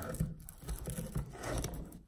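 A small screwdriver and a steel pry claw scraping and clicking against a wooden subfloor as a flooring staple is pried up out of the wood.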